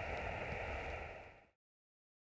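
Faint, steady hiss of outdoor background noise that fades out to complete silence about one and a half seconds in.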